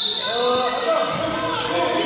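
A referee's whistle blown once at the start, a short steady blast, followed by a handball bouncing on the court floor in a reverberant sports hall.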